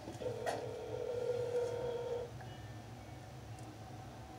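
Telephone ringback tone, the line ringing at the other end of a call: one steady tone about two seconds long, then a pause. A single click comes about half a second in.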